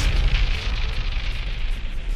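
A heavy, explosion-like cinematic boom dying away over about two seconds, its hiss fading while a deep rumble holds underneath, over trailer music.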